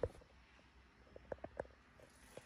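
Kitchen utensils handled during batter making: a soft knock at the start, then four small clicks and taps about a second and a half in.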